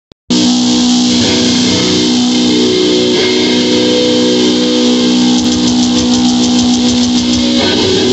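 Electric guitar music with loud, sustained held notes, starting abruptly a moment in and ringing on steadily.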